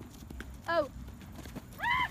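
A horse's hooves thudding in a patter of soft beats, with a short pitched call a little under a second in and another near the end.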